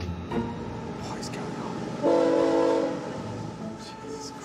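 Train horn sounding one blast of just under a second, a chord of several steady tones, about halfway in, over the steady noise of a passing train.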